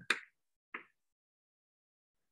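Chalk on a blackboard: two short sharp clicks, the first just after the start and the second, fainter, a little under a second in.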